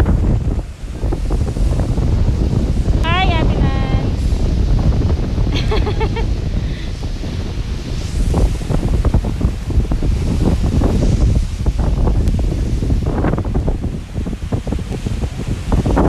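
Strong wind buffeting the microphone over surf breaking on a rocky shore. Short bursts of voice come through about three and six seconds in.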